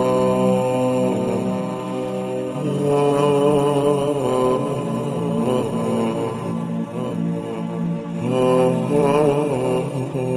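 Melodic vocal chanting: a single voice holding long notes, with wavering ornamented runs about three seconds in and again near the end.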